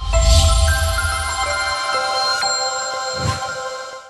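Logo-sting music: a deep bass hit with a whoosh opens a held electronic chord of bright, bell-like tones, with a second low swell about three seconds in.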